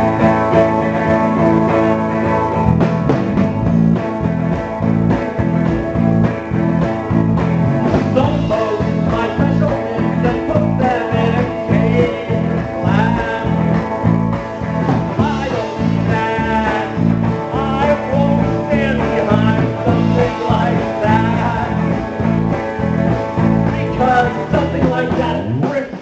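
A live rock band playing a down-home, country-flavoured song: electric bass, drum kit and guitar with a steady beat.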